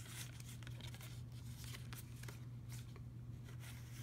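Faint rustling and light taps of paper journaling cards being shuffled in the hands, over a steady low hum.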